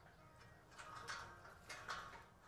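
Near silence: faint outdoor ambience with a few soft, brief rustles or knocks around the middle and near the end.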